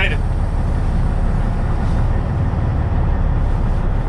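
Inside a truck cab on the move: the truck's engine and road noise as a steady low rumble.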